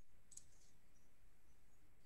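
A single faint computer mouse click about a third of a second in, otherwise near silence.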